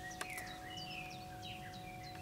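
Birds chirping: a scatter of short, quick rising and falling calls, over a faint steady hum and one small click near the start.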